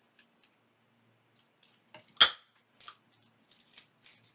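Handheld hole punch snapping shut through card stock once, about two seconds in, with a few faint clicks and rustles of handling around it.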